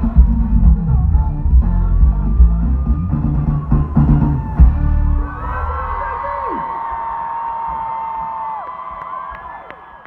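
Live band playing loud with heavy bass and drums, stopping abruptly about five seconds in. A stadium crowd cheers and screams on after the music ends, fading away near the end.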